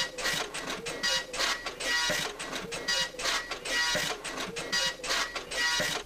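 Office printer printing in a run of short buzzing passes, about two a second.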